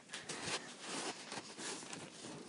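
Faint, irregular soft rustles and taps of a handheld phone camera being moved about.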